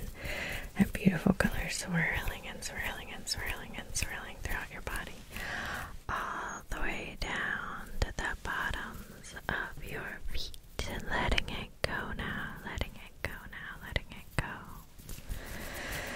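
A woman whispering softly throughout, breathy and without voice, broken by many small sharp clicks.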